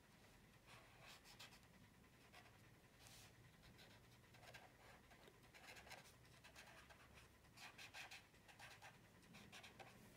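Near silence, with faint scratchy strokes on paper now and then, some in quick clusters.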